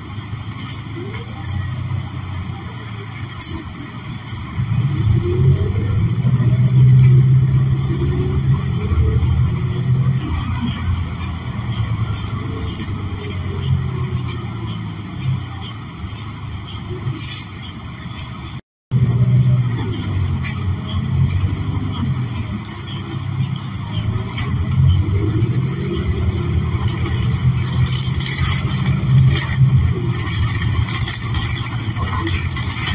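Inside a New Flyer XN40 city bus under way: the Cummins Westport L9N natural-gas engine and Allison automatic transmission running, the engine note rising and falling as the bus pulls away and changes gear, over road noise. It is loudest for a few seconds about five seconds in, and the sound cuts out for an instant about two-thirds of the way through.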